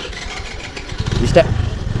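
A motor vehicle engine running close by, its low rumble growing louder about a second in.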